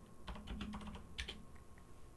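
Typing on a computer keyboard: a quick run of faint keystrokes through the first second or so, then a few single clicks.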